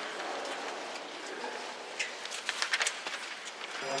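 The tail of an audience's applause dying away into a quiet hall murmur, with a few sharp clicks about halfway through. A wind band's held chord begins right at the end.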